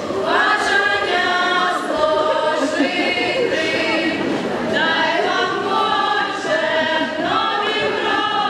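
Group of voices singing together in chorus, a Ukrainian folk song with long held notes.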